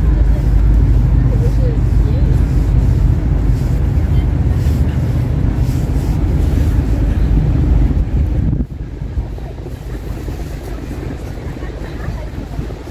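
Wind buffeting the microphone as a loud, low rumble that drops away suddenly about two-thirds of the way through, leaving a quieter outdoor background.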